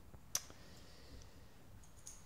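A single short, sharp click about a third of a second in, against quiet room tone.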